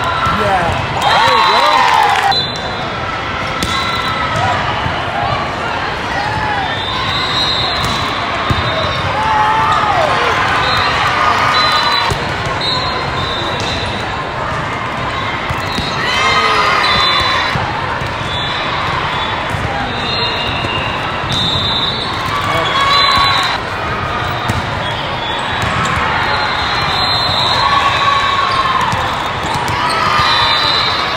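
Indoor volleyball rallies in a large, echoing hall: the ball being struck and bouncing on the court, players calling out, over a constant babble of crowd voices.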